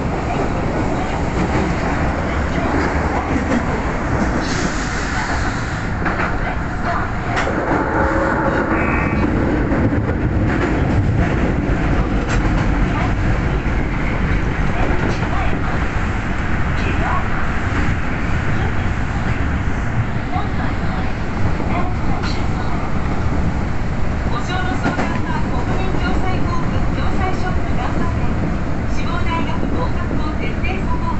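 Subway train running at speed through an underground tunnel, heard from inside the front car: a steady, loud rumble of wheels on rail and running gear, with light rail clicks.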